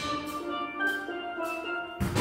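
Steel band playing a quiet passage: the bass pans and drums drop out, leaving the higher steel pans on held notes that move step by step in pitch.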